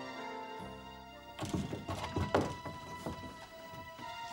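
Steady background music, and from about a third of the way in a cluster of thumps and knocks, the loudest about halfway, as a burglar clambers in through a window past the hanging blind.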